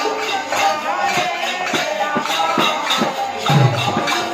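Live kirtan ensemble: double-headed barrel drums (khol) beaten by hand, small hand cymbals jingling in a steady rhythm, and a harmonium playing sustained notes. A deep bass drum stroke stands out near the end.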